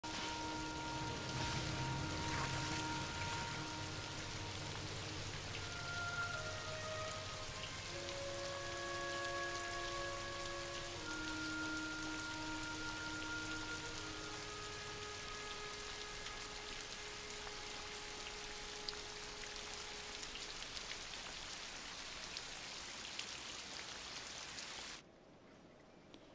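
Heavy rain falling on a driveway and lawn at night, with a soft film score of long held notes changing every few seconds over it. The rain cuts off suddenly near the end.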